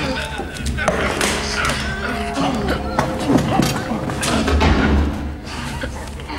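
Thuds and scuffling of a man being held down in a struggle, with strained voice sounds, over film score music.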